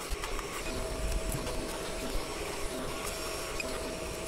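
Elegoo Neptune 4 Pro 3D printer humming steadily as its motors move the print head to the next bed-leveling point, with a faint steady whine starting about half a second in.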